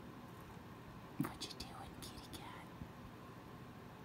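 A person whispering briefly, soft hissy sounds lasting about a second and a half from a little over a second in, over faint room noise.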